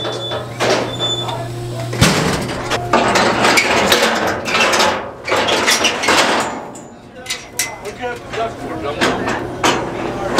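Steel bison-handling chute and alley pens clanging and banging, with repeated metallic knocks and a loud bang about two seconds in. A steady low hum stops abruptly at that bang.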